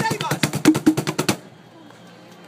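Fast hand drumming on wooden cajons, a dense roll of strikes that stops abruptly about a second and a quarter in.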